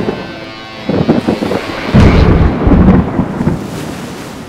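Thunder: a crack about a second in, then a loud rolling rumble that dies away before the end.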